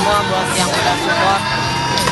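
A man's voice over background music.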